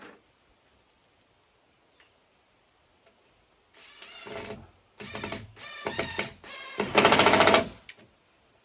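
A cordless driver runs in five short bursts as a big screw is driven up into an overhead log beam. The rattle is rapid and pulsing, and the final burst is the longest and loudest as the screw goes home.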